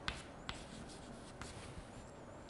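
Chalk writing on a chalkboard: a few short, faint taps and scrapes as symbols are written.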